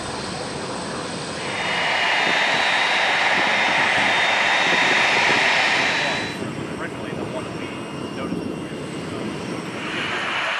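Lockheed C-5 Galaxy's four turbofan engines running as it rolls along the runway. A piercing high whine swells in about a second and a half in and holds. It cuts off abruptly about six seconds in, leaving a quieter, even jet rush.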